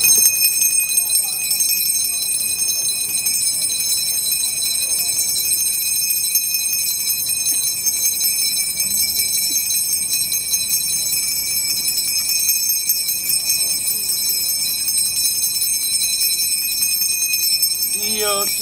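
Small hand-held altar bells rung continuously in a steady, high-pitched jangle. This is the ringing that marks the blessing with the Blessed Sacrament in the monstrance.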